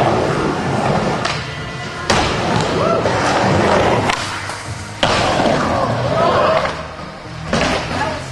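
Music soundtrack playing over a skateboard rolling on ramps, with sharp board slams about two and five seconds in.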